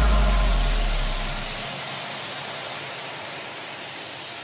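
Breakdown in an electronic dance track: a held sub-bass note fades out beneath a synthesized white-noise wash that gradually dies down, and the noise begins to swell again near the end as a build-up toward the next section.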